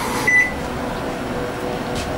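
Steady hum of a running kitchen appliance, with a faint continuous tone under an even whir, and one short high electronic beep just after the start.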